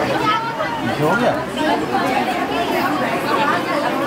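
Many women's voices chattering over one another in a crowd, with no one voice standing out.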